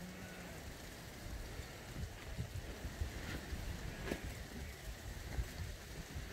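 A large flock of sheep walking past over grass: the steady, uneven noise of many hooves on the turf.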